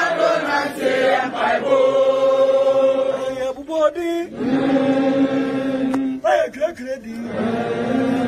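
A group of people chanting, holding long notes with short breaks between phrases.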